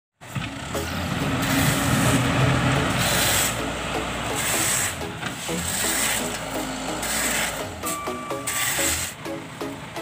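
A backhoe loader's diesel engine running, with background music laid over it.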